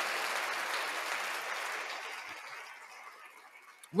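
Applause, fading away steadily until it has almost died out about three and a half seconds in.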